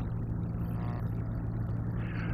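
Steady low electrical hum with an even hiss of room and recording noise behind it.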